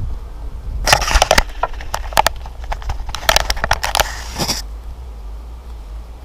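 Plastic chicken-wire mesh crackling and scraping against a rubber tyre as it is pulled and worked into place: a dense run of sharp clicks and crackles that stops about four and a half seconds in.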